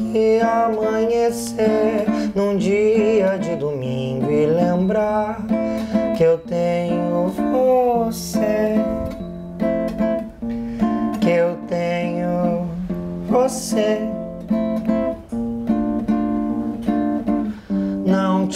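Nylon-string Yamaha classical guitar strummed and plucked in a slow song, with a man's singing voice over it in places.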